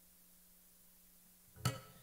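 Quiet room tone with a faint steady hum, then one short sharp sound, a knock or strum, about one and a half seconds in that fades quickly.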